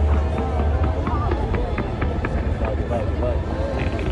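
Crowd of onlookers at a fireworks display: many voices talking and calling out over a steady low rumble, with scattered sharp crackles from the fireworks.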